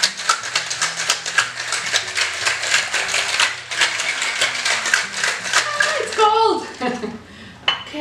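Ice cubes rattling hard inside a stainless steel cocktail shaker, shaken fast and steadily to chill and mix the drink, stopping about six seconds in.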